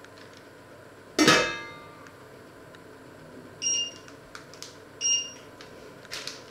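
A stainless steel pot lid is set onto the pot with one loud metallic clank that rings briefly, about a second in. Later come two short electronic beeps, about a second and a half apart, typical of an electric hob's touch controls.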